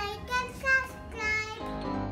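A young girl's high voice, speaking or singing in short phrases, over background music.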